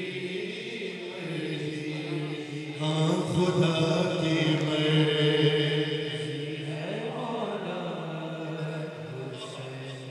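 Male voice singing a manqabat, an Urdu devotional poem in praise of Imam Hussain, in long held notes, with a sliding rise and fall in pitch about seven seconds in. It is loudest in the middle and eases off near the end.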